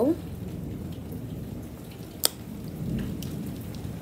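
Steady rain falling outside, with a single sharp click about two seconds in and a faint low rumble about three seconds in.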